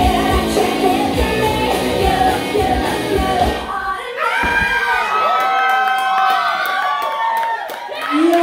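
Rock song with a driving beat playing loud over a club sound system; about halfway through the beat stops and an audience cheers and whoops, with long, high, wavering shouts.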